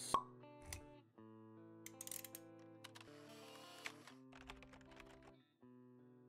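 Quiet logo-intro music: soft held synth tones with light scattered clicks, opening with a sharp pop just after the start and fading out a little before the end.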